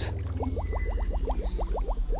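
Cartoon bubble-blowing sound effect: a quick run of short, rising bubbly bloops, about ten a second, starting about half a second in.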